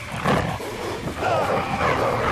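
Wolf snarling and growling in an attack, a rough wavering growl that peaks about a quarter second in.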